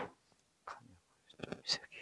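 Faint clicks and taps of hard plastic parts being handled as a black plastic accessory is fitted to the side of a Meiho VS-7055N tackle box, a few light sounds spaced through the moment.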